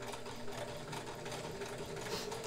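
Kenmore 158.1941 free-arm sewing machine stitching a wide zigzag at slow speed, its motor and needle mechanism running with a steady hum.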